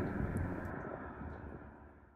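A Scion tC's 2AR-FE four-cylinder engine and exhaust receding into the distance. A low rumble with road noise dies away steadily to silence.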